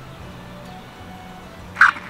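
Small solar-powered floating fountain pump in a steel bowl of water, running with a faint steady whine and hum, with one short loud burst near the end. It is making noise without spraying, which she puts down to it not yet having enough sunlight to charge.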